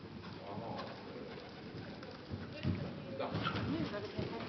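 Horse cantering on the sand footing of an indoor arena, its hoofbeats dull and growing louder as it comes near towards the end. A bird coos twice in the second half.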